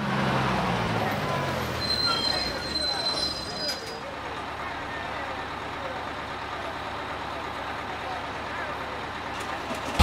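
A bus drawing up and stopping, its engine running low at first, with a brief high squeal from the brakes about two seconds in, then steady street noise.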